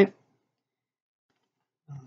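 A man's voice saying one word at the very start, then near silence until he starts speaking again near the end.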